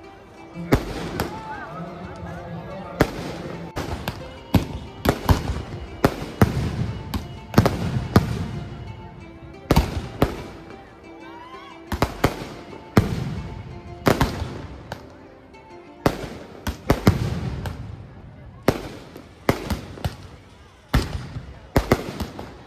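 Firecrackers bursting in an irregular string of about twenty loud bangs, each trailing off in a short echo.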